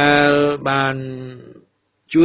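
A man's voice holding two long, steady-pitched syllables in a chant-like drone, the second slightly falling and fading out.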